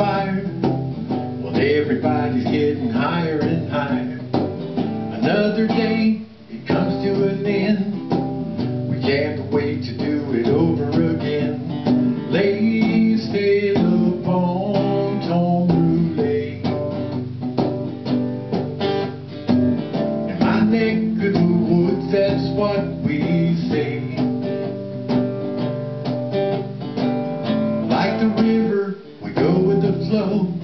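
Instrumental break in a song: strummed and plucked guitar playing on without vocals. The music drops out briefly about six seconds in and again near the end.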